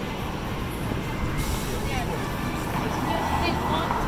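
Street ambience: steady traffic noise with pedestrians talking nearby.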